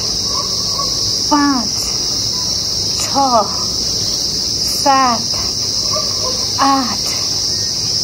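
Steady high-pitched drone of insects in the trees. A short voiced sound from the exercising woman cuts in four times, about every two seconds, in time with her kicks.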